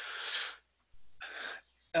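Two audible breaths close to a headset microphone, each a short hiss without pitch lasting under a second.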